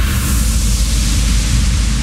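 Loud, even rushing noise over a deep rumble, a sound effect under animated title graphics.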